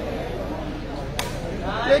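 A single sharp smack of a sepak takraw ball being kicked, about a second in, over a low murmur of spectators.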